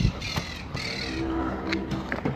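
Footsteps on street pavement while walking, with harsh, crow-like bird calls about half a second to a second in.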